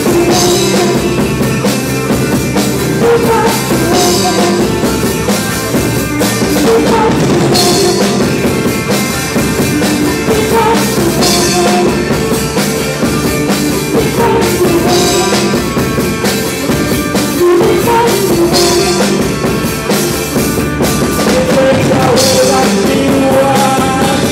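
Live rock band playing electric guitar, bass and drum kit, with crash cymbal hits every few seconds.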